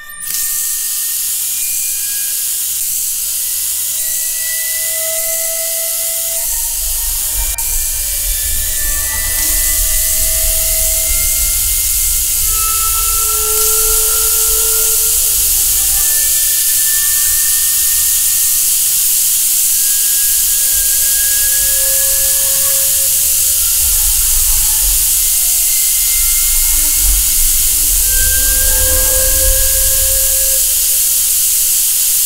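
Water running full from a tap: a loud, steady rushing hiss that starts suddenly. A low rumble joins it about six seconds in.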